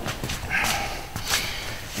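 Footsteps of two people stepping back into position on a sports-hall floor, with a couple of short breathy hisses like a sniff or exhale.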